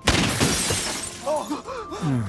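A sudden crash of breaking glass, loudest at the start and dying away over about a second, from a car-crash scene in a TV drama's soundtrack.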